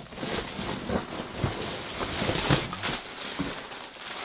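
Plastic packaging crinkling and rustling as items are handled and rummaged through in a cardboard box, in irregular bursts with a few light knocks.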